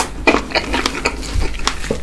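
Close-miked chewing of a fresh strawberry with whipped cream: a rapid run of wet, crackly mouth clicks and squishes.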